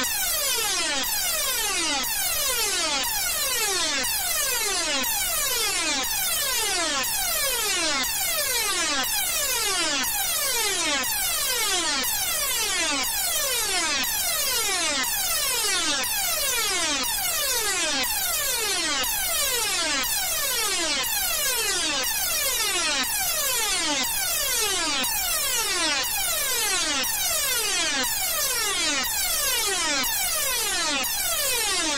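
A buzzy electronic tone with many overtones, gliding steeply downward in pitch and starting over about once a second. It repeats in an unbroken loop over a bright hiss, like a heavily edited alarm or buzzer sound effect.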